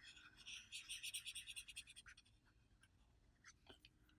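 Crayola felt-tip marker scribbling across paper in rapid short strokes while colouring in a circle, stopping about two seconds in.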